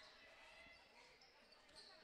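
Near silence: faint gymnasium room tone, with a basketball bouncing faintly on the hardwood court.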